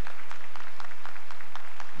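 Arena audience applauding: a steady patter of many hands clapping.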